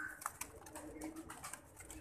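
Domestic pigeon cooing faintly and low in its cage.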